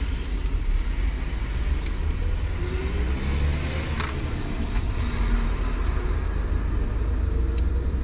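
Steady low rumble of a taxi's engine and road noise, heard from inside the cabin. A single sharp click sounds about four seconds in.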